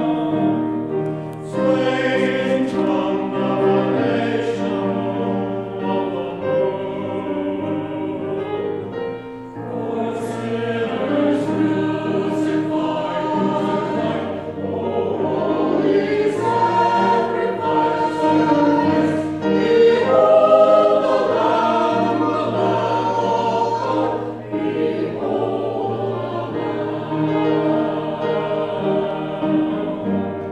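Mixed-voice church choir singing an anthem in parts, with piano accompaniment.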